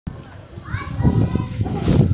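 Children's voices and crowd chatter, with low thuds in the second half.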